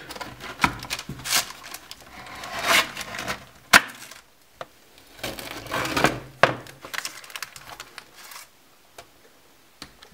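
Large kitchen knife cracking and crunching through a candy-loaded chocolate pizza on a baking tray. The topping of M&M's, Oreos and hardened caramel is too hard for a pizza roller. Irregular crunching strokes and sharp cracks, the loudest crack near the middle, quieter toward the end.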